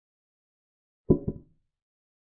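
Chess board software's piece-capture sound: two quick wooden-sounding clacks close together about a second in, marking a queen taking a knight.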